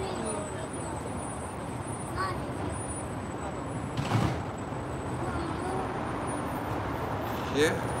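Steady background rumble in a room, with faint, scattered voices and a brief noisy scrape about halfway through.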